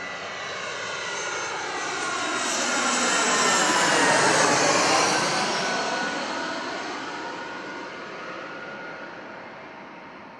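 Twin-engine jet airliner flying low overhead. The engine noise swells to its loudest about four seconds in and fades as the plane passes, with a whine that slides down in pitch.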